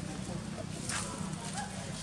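Indistinct background voices over a steady low hum, with a brief rustle about a second in.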